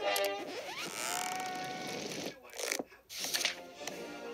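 Television programme soundtrack heard from the TV set: music, with a rising sweep into a held note in the first half. There is a brief drop and a few sharp clicks about three seconds in.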